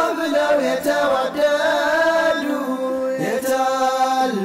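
Nasheed vocal music: several voices singing sustained notes in harmony, with a rising swoop about three seconds in.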